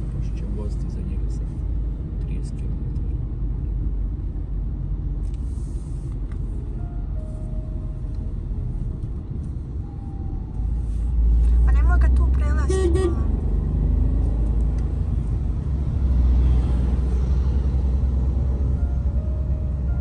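Car interior noise while driving: a steady low road and engine rumble that grows louder about ten seconds in.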